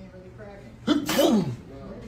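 A person sneezing once, about a second in: a sudden sharp burst with a falling voiced tail.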